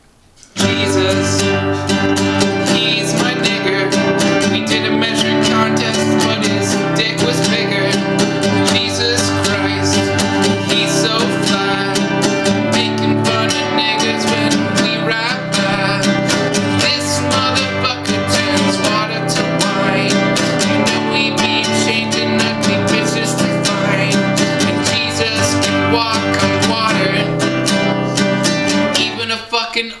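Nylon-string classical guitar strummed steadily in a continuous chord pattern, starting about half a second in.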